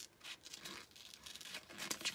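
Small sharp scissors snipping around a printed image in glossy wrapping paper, the paper crinkling as it is turned. The sound is fairly faint, a run of short, crisp snips and rustles.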